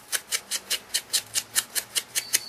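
A small foam sponge dabbing ink onto the edge of a punched cardstock heart in quick, even pats, about six a second, to shade it.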